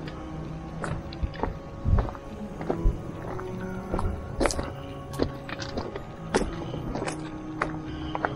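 Background music with steady held notes, over a hiker's footsteps on a loose-stone gravel trail, about two steps a second.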